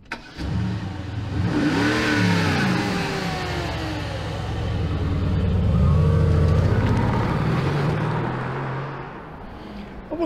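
Mercedes sports car's engine starting and revving, rising and falling in pitch about two seconds in. It then runs on, louder around six seconds, before fading near the end.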